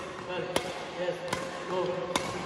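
Badminton racket striking shuttlecocks in a fast multi-shuttle defence drill: sharp hits a little under a second apart, two in this stretch. Short squeaks between the hits, likely shoes on the court mat.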